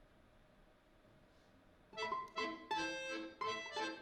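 Quiet room tone for about two seconds, then a balalaika and accordion duet starts playing: quick plucked balalaika notes that ring and fade, over held accordion chords.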